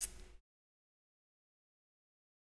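A sharp click followed by a short burst of noise lasting under half a second, cut off abruptly into dead silence.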